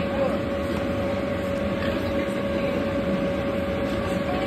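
The electric blower fan that keeps an inflatable bounce house inflated, running steadily: a constant drone with a steady hum.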